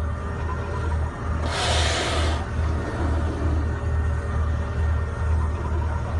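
A steady low rumble, like a motor or wind heard on open water, with a louder rush of hiss from about one and a half to two and a half seconds in.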